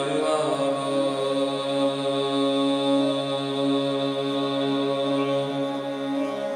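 Tuvan throat singing: one steady, held drone with bright overtones ringing out above it.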